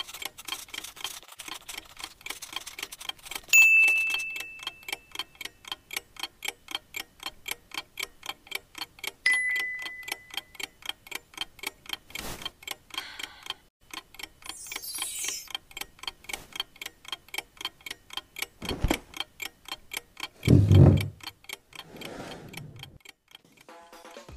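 Clock ticking quickly and evenly. A few short effects sit over it: a sharp hit with a ringing tone about four seconds in, a shorter tone near nine seconds, and a heavy low thump around twenty-one seconds, the loudest sound of all.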